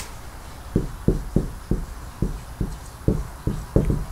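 Dry-erase marker writing on a whiteboard: a sharp click at the start, then a run of short, low knocks, about three a second, as the marker strokes hit the board.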